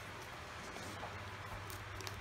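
Quiet room with a steady low hum and a few faint crinkles near the end as fingers pick at the wrapping on a small gift.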